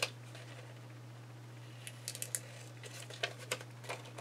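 Scissors snipping through magazine paper in short cuts, a cluster about two seconds in and another near the end, with light paper rustling between them.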